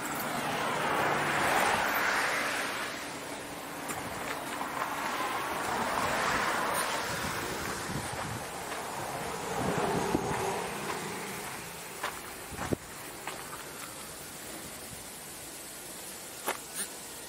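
Vehicles passing on the road, each a swell of tyre and engine noise that rises and fades, three in turn, one with a falling pitch as it goes by. A few light knocks follow near the end.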